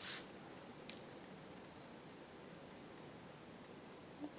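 Quiet room tone: a faint steady hiss with a thin, high, steady whine, and one soft tick about a second in.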